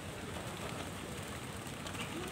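Small garden fountain splashing steadily into a pond.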